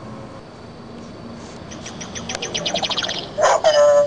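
A fast, high chirping trill about two seconds in, then a short call held at one steady pitch near the end.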